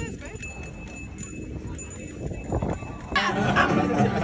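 Quiet open-air plaza ambience with a few scattered knocks, then people talking and chattering from about three seconds in.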